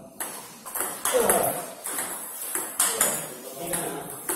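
Celluloid-type table tennis balls clicking in a fast multiball forehand drill, several sharp strikes a second as balls are fed, bounce on the table and are hit by the bat. Voices are heard alongside.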